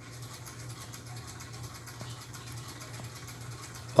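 A low, steady hum with faint hiss: quiet room tone with no distinct event.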